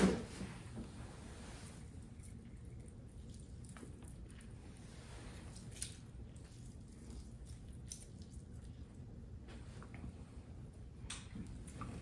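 Faint wet squishing of a lime half being squeezed by hand, with a sharp tap at the start and a few soft clicks.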